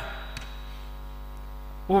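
Steady electrical mains hum from the microphone and sound system, heard in a pause between spoken phrases, with one faint click a little less than half a second in.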